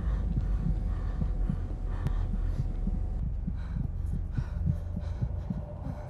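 Horror-film sound design: a deep, steady low drone with a quick, uneven pulse of low thuds, about four a second. A faint thin high tone sits above it and stops about three seconds in.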